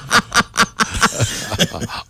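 People laughing into studio microphones: a run of quick bursts about five a second that weakens and tails off in the second half.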